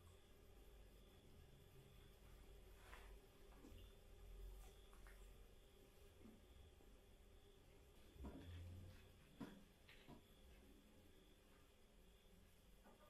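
Near silence: faint room tone with a few soft clicks and rustles of lamb chops being eaten by hand, the clearest about eight to ten seconds in.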